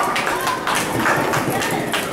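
Barrel-racing horse galloping hard on arena dirt, a rapid run of hoofbeats, with spectators shouting over it.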